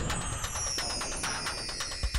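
Broadcast transition sound effect for a countdown title card: a shimmering, sparkly swoosh whose high tone falls slowly, with fast glittering ticks.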